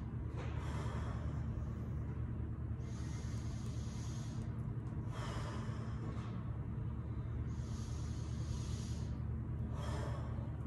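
A man taking slow, deep breaths in and out, each breath an audible rush of air lasting a second or so, with short pauses between. A steady low hum runs underneath.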